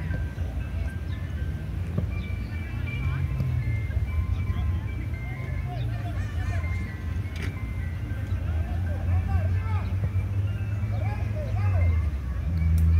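Distant children's shouts from an outdoor soccer game, with a simple tinkling melody of held notes playing over them and a steady low rumble underneath.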